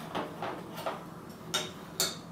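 A few light clicks and knocks from a glass beer bottle being set down on a table and handled at the cap, four separate taps over two seconds.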